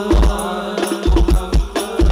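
Hadrah percussion: a darbuka played in a quick rhythm of sharp strokes and deep bass thumps, with frame drums, under chanted singing.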